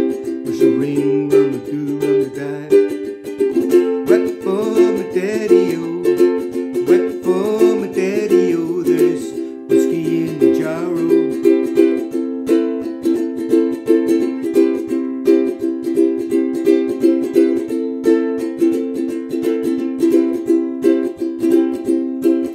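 Ukulele strummed in a steady rhythm of chords, with a man's voice singing along for roughly the first ten seconds, then the ukulele playing on alone.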